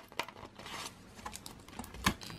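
Faint rustling and a few small clicks from a stiff paper card folder being handled and turned over, with trading cards taped inside it.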